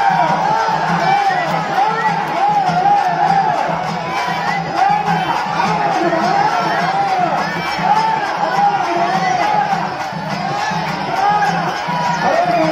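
Loud festival music with a wavering, ornamented high melody over a steady, pulsing drum beat, heard over the chatter and cheering of a large crowd.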